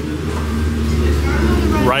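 Busy indoor market ambience: a steady low hum with faint background voices of shoppers and vendors.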